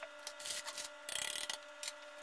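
Faint rubbing and scraping as kitchen items are handled and moved on a countertop, in several short scratchy bursts with a few soft clicks, over a faint steady hum.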